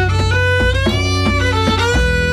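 Live band music led by a violin playing a melody with slides between notes, over bass guitar and djembe, in the instrumental gap between sung lines.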